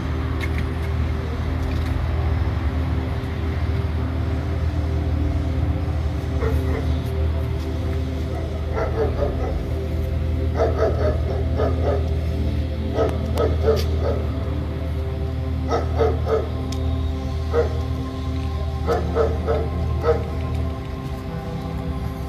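A steady, low droning background music bed, with a dog barking in short runs several times from about six seconds in.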